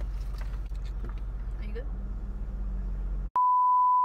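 Low steady rumble of a car interior. A little over three seconds in it cuts abruptly to a loud, steady, single-pitched test-tone beep, the tone that goes with TV colour bars.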